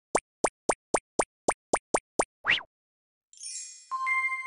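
Cartoon sound effects: a run of short pops, about four a second, keeping step with an animated cat walking, then a quick rising swoosh. Near the end comes a shimmering chime that lands on a bright ringing ding.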